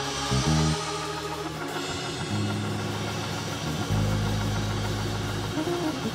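Live church band music: drums over long-held low bass notes that change pitch a few times.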